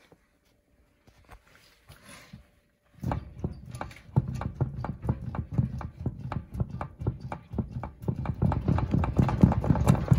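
Ford F-250 Highboy front wheel assembly knocking as the wheel is shaken by hand, with repeated uneven clunks, several a second, starting about three seconds in. The knocking is the sign of play in the front end: the whole spindle moves, not a backed-off spindle nut.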